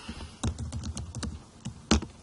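Typing on a computer keyboard: an irregular run of key clicks, the loudest one near the end.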